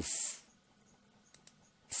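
A brief breathy hiss at the start, then near silence with two faint computer-mouse clicks about a second and a half in, as the oscilloscope software's frequency scale is switched.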